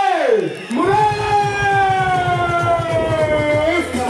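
Live concert sound through a PA: a pitched swoop, then one long note held about three seconds and slowly falling in pitch. A drum beat starts under it about a second in.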